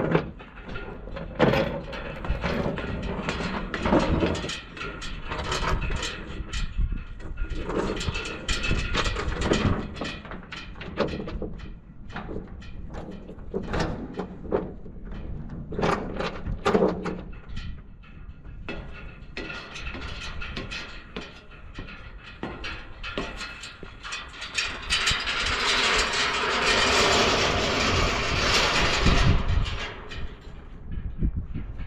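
Steel load chain clanking and rattling against a shipping container as it is handled for chaining down, mixed with footsteps and knocks on a steel rolling stair. A steady rushing noise rises for several seconds near the end.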